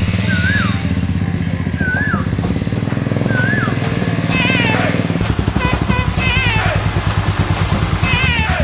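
Several motorcycle engines running as the bikes ride along at low speed, a steady low engine beat that grows more pulsing about five seconds in. A wavering melody of background music plays over the engines.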